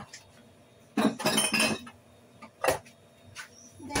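Kitchen clatter of glass and dishware clinking: a short burst about a second in, then a single sharp click near the three-second mark.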